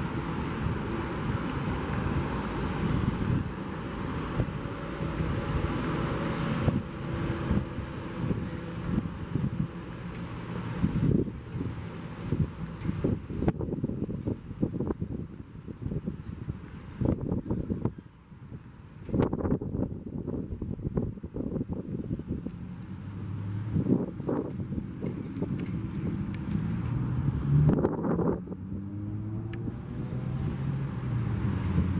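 Wind rumbling on a handheld camera's microphone while walking, with the hum of vehicle engines underneath and many small knocks from handling and steps. The rumble drops away briefly about eighteen seconds in.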